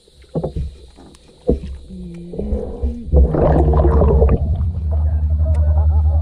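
A boat's motor humming, heard underwater beside the hull. It comes in about two seconds in, grows loud with a pulsing beat a second later, and a rush of water passes over it briefly.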